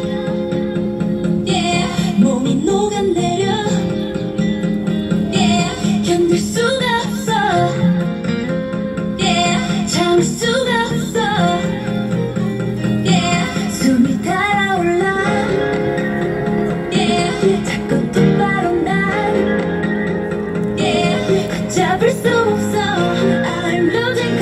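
A female voice singing a pop song into a microphone over an instrumental backing track, amplified through a street speaker.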